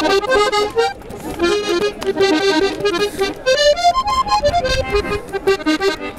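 Accordion playing a lively melody in quick runs of short notes, climbing to higher notes a little past the middle before dropping back.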